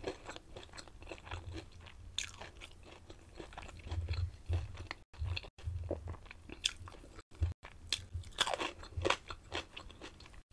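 Close-miked chewing of crunchy breaded fried food: irregular crackles and mouth clicks as the mouthful is worked.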